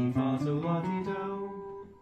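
Gibson Custom L-5 archtop guitar playing an ascending G major scale one note at a time. The notes climb step by step, and the top G, an octave above the starting note, is held for about a second and fades.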